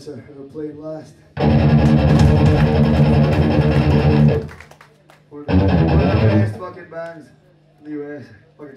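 Distorted electric guitars and bass of a hardcore band playing a loud held chord for about three seconds, then, after a short gap, a second shorter one. A man talks over the PA before and after.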